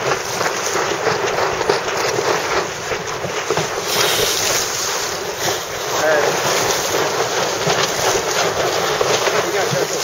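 Wind buffeting the microphone over water washing and splashing around a small sailboat under way, as a steady, gusty rush.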